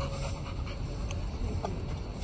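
A pitbull panting, with a few faint clicks.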